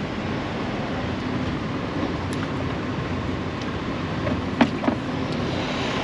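Steady rumble of idling diesel semi-truck engines, with a couple of brief clicks a little past halfway.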